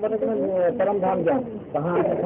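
Speech: a man talking in Hindi in a small room.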